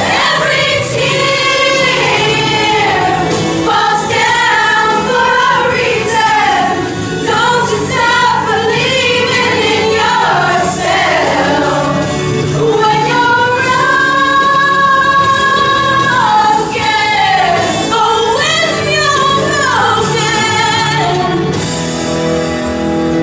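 A women's choir singing a slow song together, the voices moving through the melody with one long held note about two thirds of the way through.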